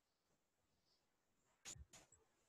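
Near silence: room tone, with two faint short clicks about a second and a half in.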